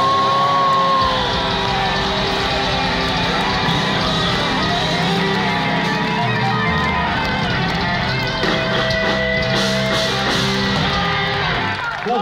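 Melodic death metal band playing live: distorted electric guitars, bass and drums at full volume, ending the song just before the end.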